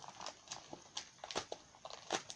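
Plastic DVD cases being handled: a scatter of faint, light clicks and taps, about half a dozen over two seconds.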